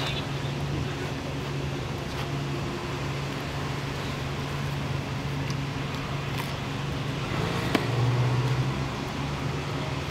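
Street traffic with a steady low engine hum. The hum grows louder for a second or so about eight seconds in.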